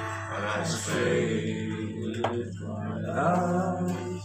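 Acoustic guitar playing, with a man's voice over it.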